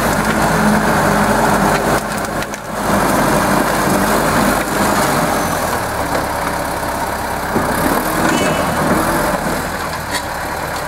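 Engine of a red crawler logging tractor running steadily as the tractor works among felled logs.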